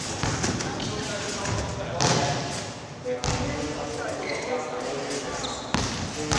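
A competition trampoline's bed and springs landing as a gymnast bounces, several sharp thumps with a springy swish, with voices chattering in the background.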